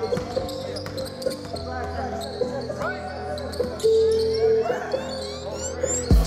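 Live game sound on an indoor basketball court: the ball bouncing on the hardwood floor, short sneaker squeaks and players' voices calling out.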